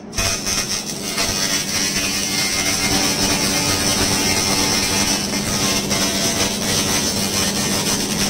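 A 1000 W continuous handheld fiber laser cleaner stripping rust from a steel sheet: a steady, dense hiss with a strong high band, over a low steady hum from the machine.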